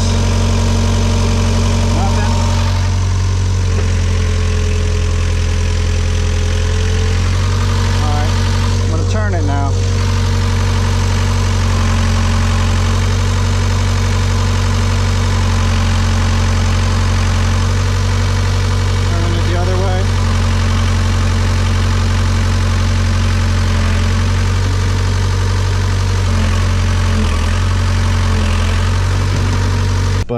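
Hitachi EX75UR-3 mini excavator's diesel engine idling steadily.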